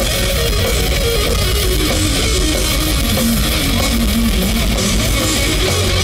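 Heavy metal band playing live with no vocals: a distorted electric guitar line that steps down in pitch over the rest of the band.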